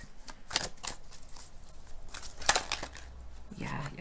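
Tarot cards being shuffled by hand: a run of short, crisp card flicks and snaps, the loudest about two and a half seconds in.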